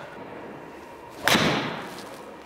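A golf ball struck by a PXG 0317 ST blade 7-iron and driven into a simulator impact screen: one sharp crack a little past halfway, ringing off in the room for about half a second. The strike came off the heel of the club face.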